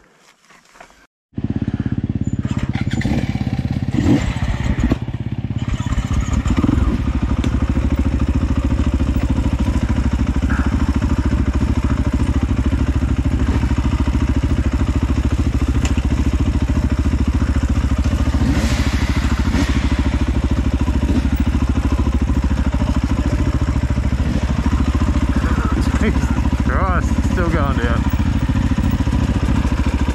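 Dirt bike engine running steadily as it is ridden along the trail, cutting in abruptly after a second or so of near quiet.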